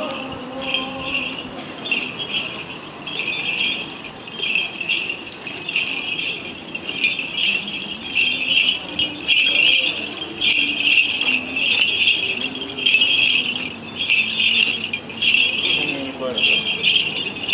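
Small metal bells of Orthodox church processional implements jingling in repeated shakes, about one a second, as they are carried along in a religious procession, with faint voices underneath.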